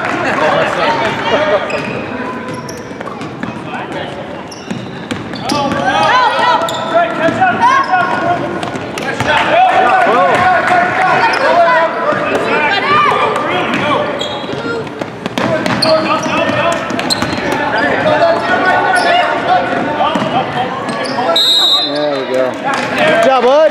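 Basketball game in a gymnasium: a ball dribbling on the hardwood court amid a steady, overlapping din of indistinct voices from players and spectators.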